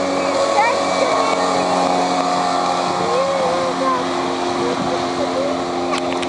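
Suzuki 55 hp outboard motor on a small fibreglass runabout, running steadily at planing speed as the boat passes and heads away.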